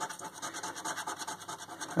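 A coin scraping the scratch-off coating from a paper scratchcard in rapid back-and-forth strokes.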